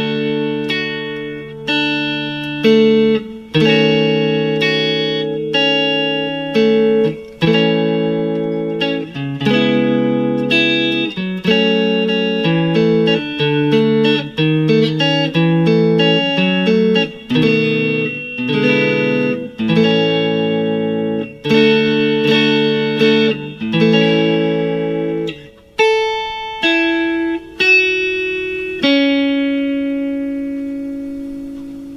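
Clean electric guitar, a Fender Stratocaster, picking through a slow chord progression (A, Amaj7, A7, D, D#m7b5, A, C#m7, F#m and on to B7, E7, A) with new notes about every second. Near the end it moves to a few single melody notes high on the neck.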